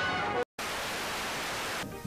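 Background music cuts off dead about half a second in. After a brief gap comes a steady, even hiss of static-like noise, which stops just before the end.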